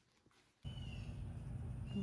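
Near silence for about half a second, then outdoor background: a steady low rumble with a faint, short, high bird chirp about a second in.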